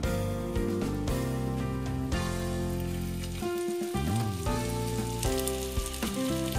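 Veg rolls sizzling in ghee on a hot nonstick tawa as they are laid down, under steady background instrumental music that changes chord about once a second.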